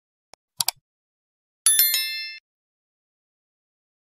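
Sound effects of an animated subscribe button: a faint tick, then a quick double mouse click about half a second in, followed about a second later by a bright notification-bell chime of several ringing tones that dies away in under a second.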